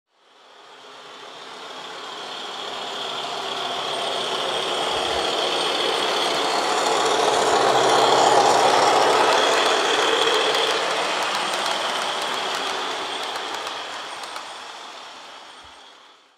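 Model railway diesel locomotive and train running along the track: a steady rolling rumble with light clicks. It grows louder to a peak about halfway through, then fades away.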